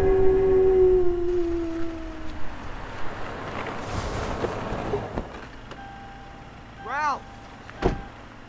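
A man's long howl, one held note that slides down in pitch and fades out about two and a half seconds in. Near the end comes a short rising-and-falling cry, then a sharp knock.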